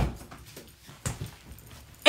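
A sharp thump at the very start, then a quiet room with faint knocks and shuffling as a person moves back into a chair.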